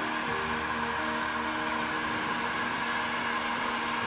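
Electric heat gun running steadily: an even fan whir with a constant low hum.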